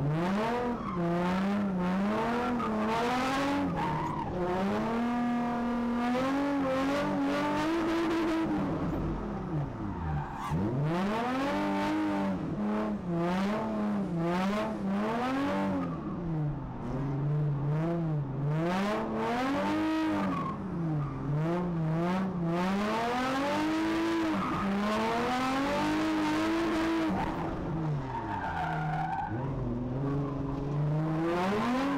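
A drift car's engine revving up and down continuously as the throttle is worked, the pitch swooping every second or two, over the hiss of tyres skidding.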